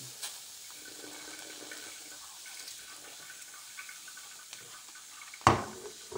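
Field mushroom caps frying in butter on foil, with a steady sizzle, and a sharp knock near the end.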